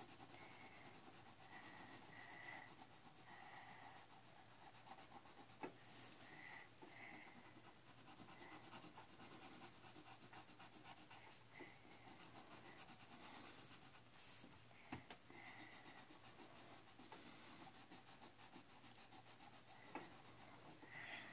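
Faint scratching of a coloured pencil shading back and forth on paper, with a couple of light ticks.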